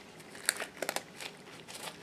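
Quiet crinkling and rustling from hands in disposable gloves handling plastic plates and a loose glove, with a few short sharp clicks about half a second in, around a second in, and near the end.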